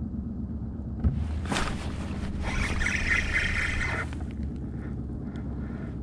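Boat motor running steadily at trolling speed with a low hum. Between about one and four seconds in, a louder hissing rustle sits over it, with a sharp sound near its start.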